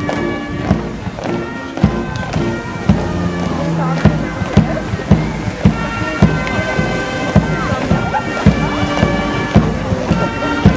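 Brass band playing a march: held wind-instrument chords over a steady low beat of about two strokes a second.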